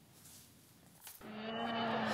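About a second of near silence, then a steady low drone with overtones fades in and grows louder.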